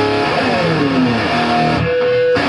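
Distorted electric guitar played through an FJA custom-built FH100 amplifier: a lead phrase whose notes slide down in pitch, followed by a few separate notes and a note held near the end.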